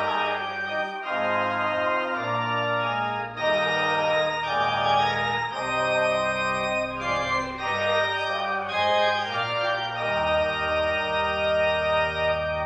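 Church organ playing a slow hymn tune in full, sustained chords that change about once a second.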